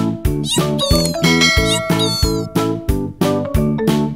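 Background music with a steady beat of about three strikes a second. From about half a second in to two and a half seconds, a high, wavering, meow-like cry sounds over the beat.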